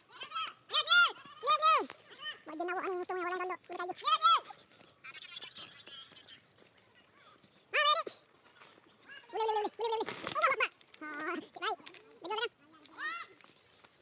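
Several voices shouting and whooping in short, high calls that rise and fall, one after another and sometimes overlapping. A brief noisy rustle comes about ten seconds in.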